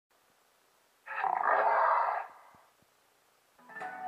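The MGM lion's roar from the Metro-Goldwyn-Mayer Cartoon logo: one roar a little over a second long that starts about a second in and fades away. Music with plucked and held notes starts near the end.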